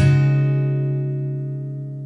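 Background music: a plucked guitar chord struck at the start, ringing and slowly fading.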